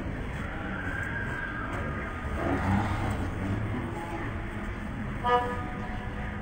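Steady background of street traffic and low voices, with one short car horn toot about five seconds in, the loudest sound.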